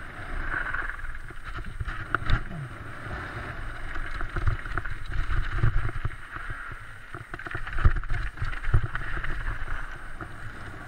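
Mountain bike running fast down a loose slate-gravel trail: tyres crunching over stones and wind buffeting the microphone, with sharp knocks and rattles as the bike hits bumps. The loudest knocks come about two seconds in and about eight seconds in.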